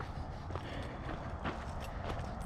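Footsteps on gravel and dirt, a few faint irregular steps over a low steady background.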